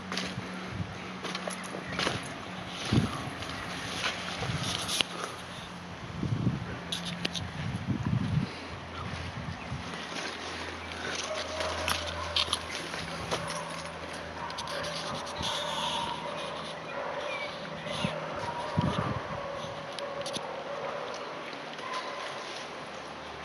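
Bushwhacking through dense undergrowth: leaves and branches rustling and brushing against a handheld camera, with footsteps and twigs cracking in irregular sharp clicks.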